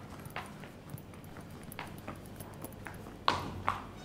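Footsteps on a hard floor: scattered sharp taps, with three louder steps about half a second apart near the end.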